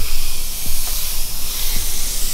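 A bare palm rubbing across a dry, unsealed cement skim-coat floor, giving a steady, loud hiss of skin on gritty surface.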